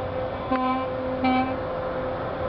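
A steady engine drone, with two short horn-like toots about half a second and a second and a quarter in.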